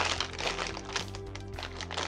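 Plastic candy packaging crinkling and crackling as it is opened by hand, over background synth music with steady bass notes.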